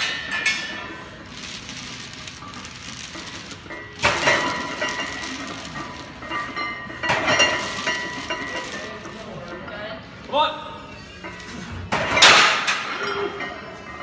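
Heavy steel chains hanging from a loaded barbell clink and rattle as a heavy bench press set is pressed and lowered, with several louder bursts of clattering.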